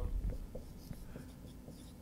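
Dry-erase marker writing on a whiteboard in a few faint, short strokes.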